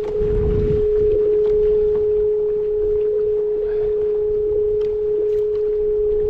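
A steady hum held on one pitch, with wind and water noise beneath it that is strongest in the first second.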